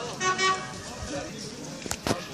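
A horn gives a short toot on one steady note about a quarter second in, over the murmur of a crowd's voices; a sharp knock follows near the end.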